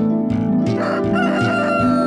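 A rooster crowing over the start of the theme music, its last note long and held through the second half.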